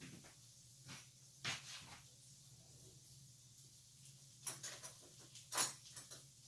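Light knocks and clicks of kitchen items being handled at a counter, a few scattered strokes with the sharpest about a second and a half in and near the end, over a low steady hum.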